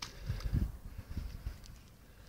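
Waders squelching and sucking in deep, soft mud as a man wades step by step: a few dull, irregular thuds, the loudest about half a second in.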